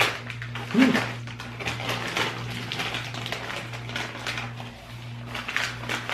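Snack bag of kettle corn crinkling and rustling as a hand reaches in for a handful of popcorn, making many small crackles, over a steady low hum.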